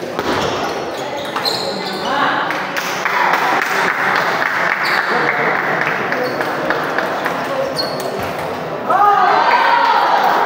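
Busy table tennis hall: scattered knocks of ping-pong balls on tables and rackets over a steady hubbub of many voices, with voices growing louder near the end.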